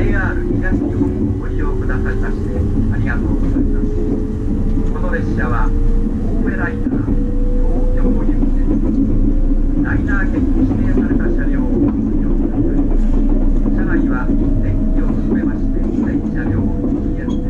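Cabin noise of a JR East E257 series electric train running on the rails: a steady rumble with a thin motor whine that rises slowly in pitch over the first ten seconds or so as the train gathers speed.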